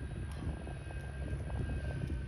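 An engine running steadily at idle, a low even drone with a thin steady whine above it and a few faint clicks.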